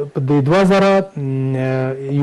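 A man's voice: a few short syllables, then one long vowel held at a steady pitch for nearly a second.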